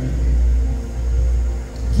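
Church band's bass and keyboard holding a low sustained chord through the PA, a deep steady rumble with faint held notes above it, dipping briefly near the end.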